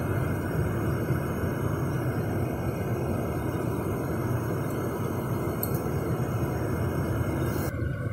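Steady road and engine noise inside a moving car's cabin, an even low rumble.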